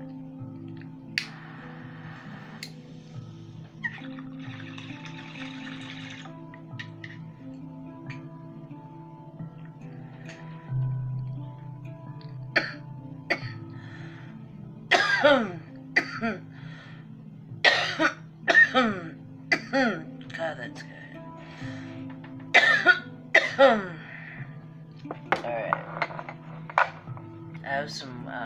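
Glass bong bubbling in two short draws as the smoke is pulled through the water, then from about 15 s a run of hard coughing fits after the hit. Music plays steadily underneath.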